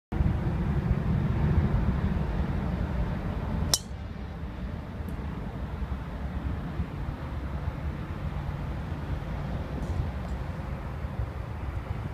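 A golf driver strikes a teed ball once, a sharp metallic crack with a short high ring, a little under four seconds in. Wind rumbles on the microphone throughout.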